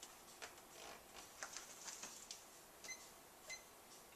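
Faint taps and clicks, then two short high electronic beeps about half a second apart near the end, from button presses on a plug-in digital power meter being switched to its voltage reading.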